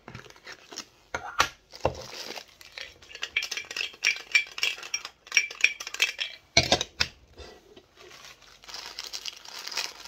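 Plastic packaging from a Funko Soda can crinkling and rustling as it is pulled out and unwrapped. A few sharp knocks and clinks come about a second and a half in and again around seven seconds.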